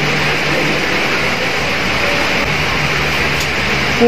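Steady whooshing room noise with a faint low hum throughout, like an air conditioner or fan running.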